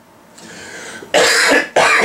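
A man coughing into his hand, with a loud cough a little over a second in.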